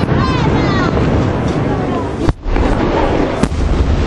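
Aerial firework shells bursting overhead in a dense, continuous barrage, with two sharp, loud bangs standing out, about two and a quarter and three and a half seconds in.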